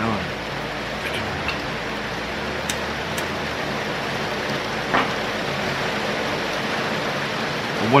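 Steady rain falling: an even hiss with a few faint taps.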